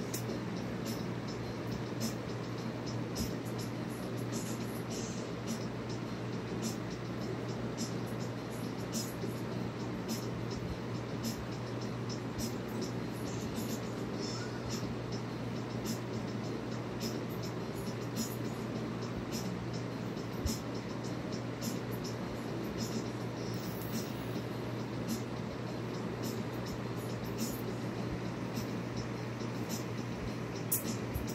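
Steady low hum and hiss with scattered faint, irregular ticks and clicks.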